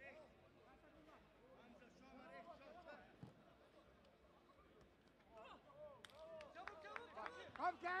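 Voices shouting and calling around a football pitch. They are faint at first and grow louder over the last two or three seconds, with sharp knocks mixed in, and end in a shout of "Let's go!".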